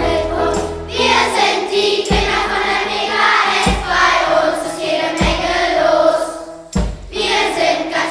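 Choir singing a German school song over instrumental backing, with a low beat about every second and a half.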